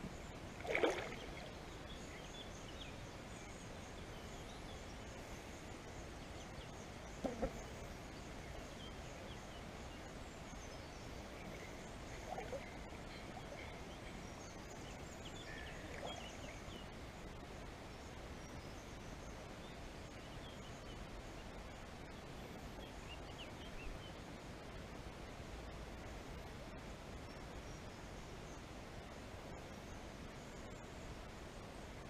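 Quiet river ambience: a faint steady background broken by a few brief splashes of water, about one second in and again around seven, twelve and sixteen seconds, with faint bird chirps.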